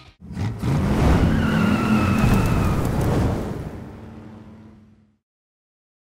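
A car engine revving hard with a high squeal over it, peaking for about two seconds and then dying away to silence about five seconds in.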